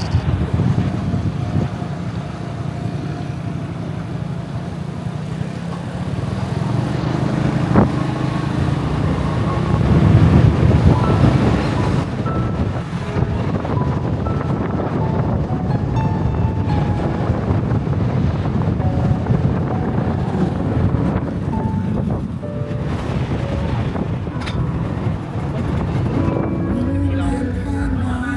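Wind rumbling on the microphone and road-traffic noise while moving along a street, with light background music playing over it.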